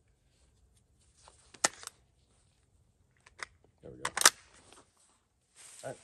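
An AR-style rifle being loaded and readied to fire: a sharp metallic click about one and a half seconds in, a few light clicks, then the loudest metallic snap about four seconds in, typical of a magazine being seated and the bolt sent home.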